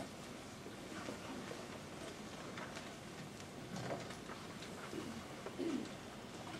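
Quiet room tone of a seated audience keeping silent, with scattered small clicks and rustles and a short low murmur near the end.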